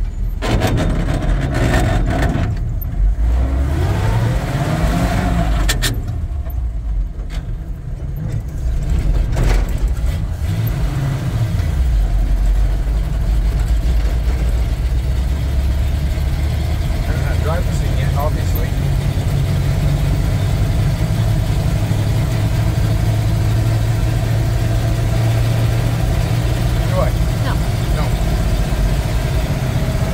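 The 1948 Ford truck's engine, heard from inside the cab, climbs in pitch and drops back twice as it is shifted up through the gears, then runs steadily at road speed.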